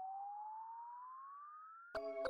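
A synthesizer riser in electronic background music: a single tone gliding steadily upward in pitch and fading. Near the end the full track breaks in with chords and a beat.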